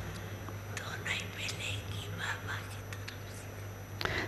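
Faint, low voices of people speaking quietly near the microphone, over a steady low electrical hum.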